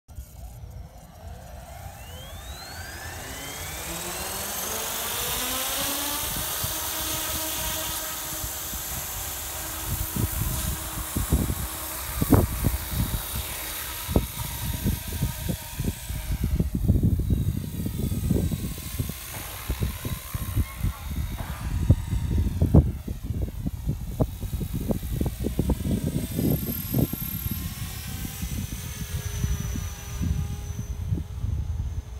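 Blade Fusion 360 electric RC helicopter spooling up, its motor and rotor whine rising steadily in pitch over the first few seconds, then running at flight speed as it flies. From about ten seconds in, irregular low buffeting noise lies over it.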